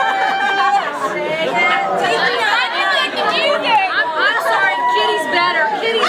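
Several people talking and laughing over one another, a steady babble of overlapping voices.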